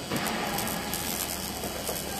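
200 W laser cleaner's beam crackling on the steel as it burns the welding trace off a weld seam. It is a dense hiss of fast fine clicks that starts just after the beginning and holds steady.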